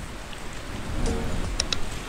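Steady rushing water noise, like waves or rain, with a brief low tone about a second in. Two sharp clicks sound in quick succession near the end, a subscribe-button sound effect.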